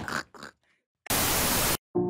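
A short burst of white-noise static, under a second long, switching on and off abruptly between stretches of dead silence: a transition effect between edited segments. Before it, the tail of a laugh fades out.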